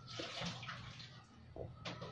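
Close-miked gulps of water being drunk from a glass, several swallows with wet mouth sounds and a sharp click near the end.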